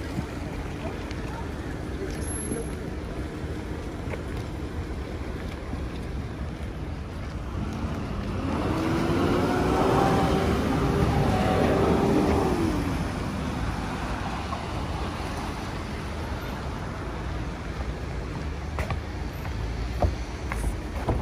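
A motor vehicle passes close by over a steady hum of town traffic: its engine note swells for a few seconds about eight seconds in, then drops in pitch as it goes past and fades.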